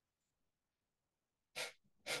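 After near silence, a short, sharp, forceful exhalation through the nose comes about one and a half seconds in, with a second one half a second later just at the end: a double kapalbhati breath.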